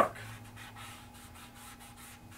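Faint rubbing of a hand blending charcoal across drawing paper, over a faint steady hum.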